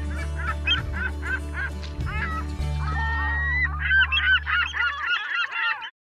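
End-card outro track: a sustained bass drone with repeated honking, goose-like calls over it. The calls come thicker and faster in the last two seconds, and the drone stops shortly before the end.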